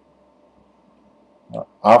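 Quiet room tone with a faint hiss, then a man's voice starting up near the end with a short hesitation sound and the start of a word.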